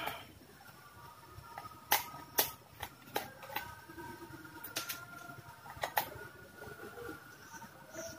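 Screwdriver working the battery-cover screw on the back of a plastic digital multimeter: a few sharp clicks and taps of the metal tip and the plastic case, spaced irregularly over a faint steady background.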